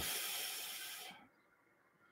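A person breathing out into a close microphone after speaking: a breathy hiss that fades away after about a second, then near silence.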